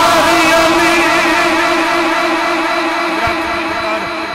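Male naat reciter's voice holding one long sung note with vibrato, amplified through a public-address system, slowly fading.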